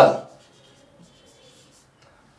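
Marker writing on a whiteboard: faint strokes of the pen tip on the board as a word is written.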